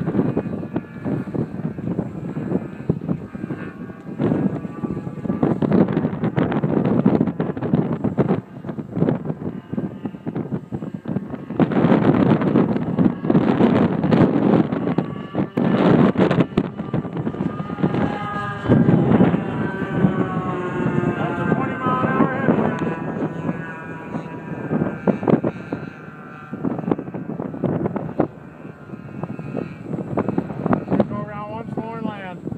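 Strong wind buffeting the microphone in gusts. From about the middle onward the model's twin K&B .61 two-stroke glow engines are faintly heard aloft, their pitch wavering as the plane flies.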